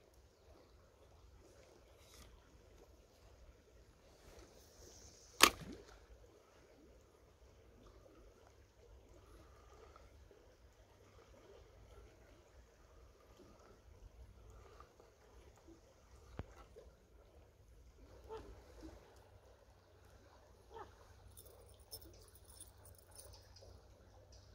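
Spinning rod and reel on a river bank: a short swish of a cast, then one sharp, loud click about five seconds in, typical of the reel's bail snapping shut. After that comes a quiet retrieve with a few light clicks over faint river flow.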